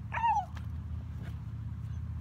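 A puppy gives one short, high-pitched whine about a quarter of a second in, over a steady low background hum.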